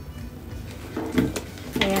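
Quiet background music, with soft handling of a leather crossbody bag and the light clink of its metal chain strap.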